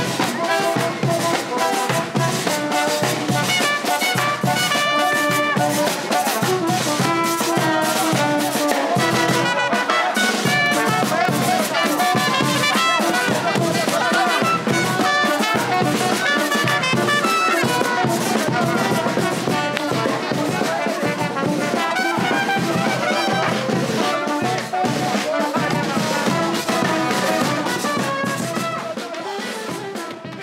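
A brass band with trumpets and drums playing loud, lively dance music.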